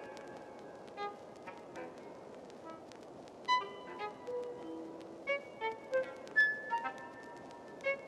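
Sparse, pointillistic computer-generated music in the style of 1950s serial avant-garde: isolated short pitched notes scattered across high and low registers at irregular moments, a few briefly held, over a faint hiss. The notes come thicker and louder after about three and a half seconds.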